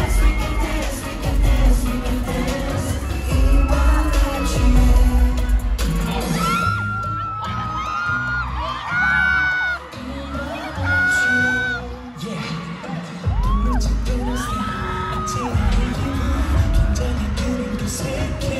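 Live K-pop dance track over an arena PA, with a heavy bass beat, the group singing and fans screaming. Midway the bass drops out for several seconds, leaving high held voices, before the beat comes back in.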